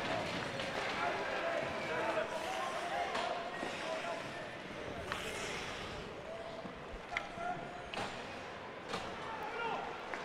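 Ice hockey rink ambience: skates scraping the ice and several sharp clacks of stick on puck and puck on boards, mostly in the second half, over faint indistinct voices from the arena crowd and benches.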